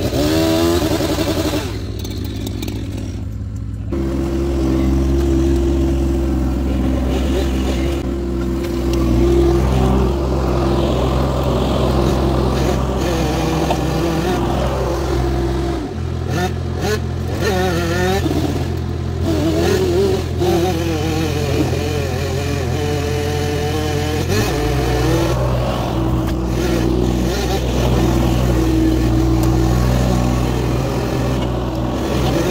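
Vermeer mini skid steer engine running under load as the machine drives and works its hydraulic grapple. The engine note steps up and down several times, and a wavering higher whine rides over it around the middle.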